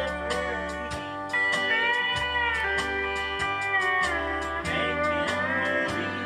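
Zum pedal steel guitar playing a country melody, its sustained notes sliding and bending in pitch, over a band track with a bass line and a steady beat.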